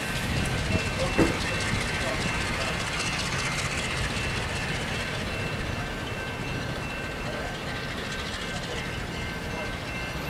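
Slow-moving diesel freight train rumbling along the track, with steady high-pitched ringing tones above it and a single knock about a second in.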